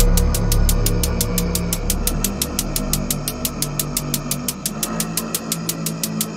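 Drum and bass track intro: fast, even hi-hat ticks over dark sustained synth pads, with the deep bass fading away over the second half.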